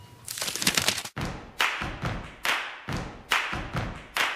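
Outro music: an acoustic guitar strummed in a steady percussive rhythm, a little more than one stroke a second.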